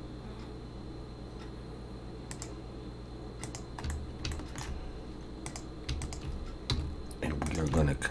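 Scattered computer keyboard and mouse clicks, a few at a time and irregular, starting about two seconds in, with a few low desk thuds, over a steady low electrical hum.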